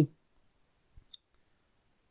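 A single short computer mouse click about a second in, a soft low tap followed by a sharp high click; otherwise near silence.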